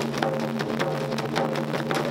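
Taiko ensemble drumming: wooden bachi sticks striking several large barrel drums in rapid, dense strokes, over a steady low hum.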